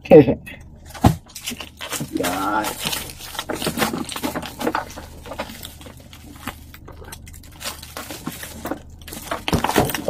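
Cardboard box and bubble-wrapped plastic parcel being handled and pulled apart: irregular rustling, crinkling and light knocks throughout, with a short laugh at the start and a brief vocal sound a couple of seconds in.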